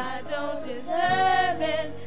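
Two girls and a woman singing together into microphones, with a note held for most of a second from about halfway through.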